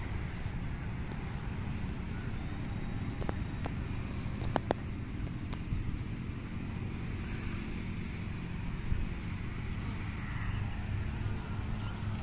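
Steady low rumble of distant road traffic, with a faint continuous high-pitched tone and a couple of sharp clicks about four and a half seconds in.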